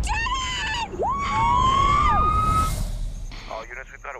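A police siren wailing, two rising glides overlapping for about a second and a half. A woman's excited shout comes just before it, and a clipped police radio voice near the end.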